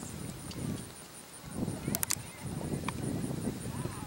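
Horse cantering on grass turf, its dull hoofbeats coming in an uneven patter, with a quick cluster of sharp clicks about halfway through.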